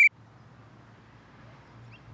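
The end of a referee's whistle blast, a single steady high note that cuts off abruptly, followed by quiet outdoor ambience with a faint low hum and one brief faint chirp near the end.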